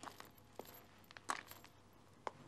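Faint, irregularly spaced light metallic clicks and clinks, about eight in two seconds, the loudest a little past halfway.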